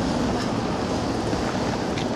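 Steady outdoor background noise, an even hiss and rumble with no distinct events.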